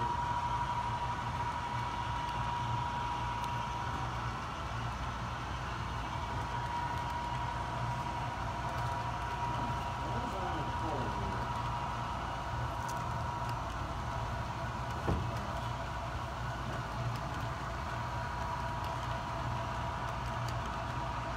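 HO scale model freight train running, empty hopper cars rolling along the track with a steady rumble and low hum, and a steady high whine. A single short knock about fifteen seconds in.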